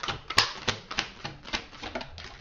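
Tarot deck being shuffled by hand: a quick run of card clicks and slaps, about five or six a second, that stops near the end.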